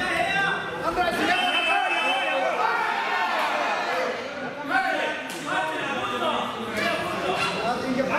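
Several people talking and calling out at once in a large, echoing hall: overlapping voices with no single clear speaker.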